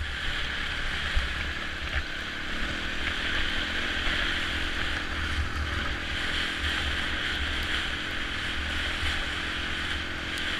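Honda trail bike's engine running steadily on a gravel track, heard under a constant rush of wind over the on-bike camera, with a couple of small knocks from the stones about a second and two seconds in.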